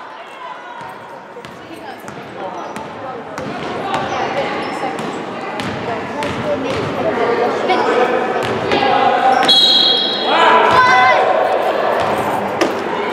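A basketball bouncing on a hardwood gym floor, with sharp knocks scattered through, over spectators' voices and shouts that grow louder in the second half, echoing in a large gym. A brief high steady tone sounds near the tenth second.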